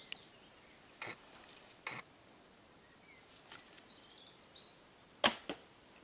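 A Korean traditional bow loosing an arrow: one sharp snap of the string about five seconds in, after a couple of fainter clicks.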